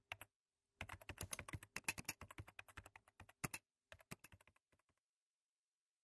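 Typing on a computer keyboard: a quick run of key clicks, with a short pause half a second in, that stops about four and a half seconds in.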